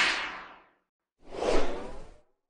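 Two whoosh sound effects accompanying an animated logo sting: a bright swish that fades within about half a second, then, after a short silence, a lower, fuller swish that swells about a second and a half in.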